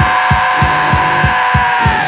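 Punk rock band recording: the drums keep a steady beat of about three kick-drum hits a second under a long held note, which sags slightly in pitch near the end.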